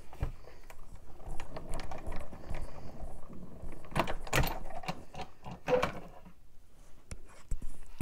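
Hand-cranked die-cutting and embossing machine being turned, pulling a plate-and-embossing-folder sandwich through its rollers: a low, uneven mechanical rumble with scattered clicks, easing off near the end.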